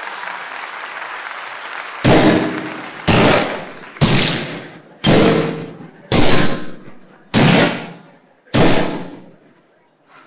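Applause dying away, then seven heavy strikes about a second apart, each ringing out before the next, the last two coming a little slower.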